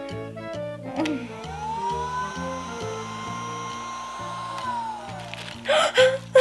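Small battery-powered motor of a Wax Vac ear cleaner whirring: it spins up to a steady high whine about a second in, runs, then winds down in pitch near the end. Background music plays underneath.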